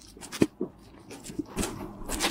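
Footsteps on snow-covered pavement: a few short steps.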